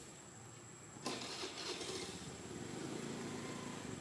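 An engine comes in suddenly about a second in and keeps running steadily, growing slightly louder.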